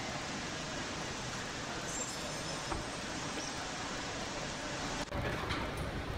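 Steady background noise of an airport terminal entrance, with no distinct event standing out. About five seconds in the ambience changes abruptly to a different, fuller background noise.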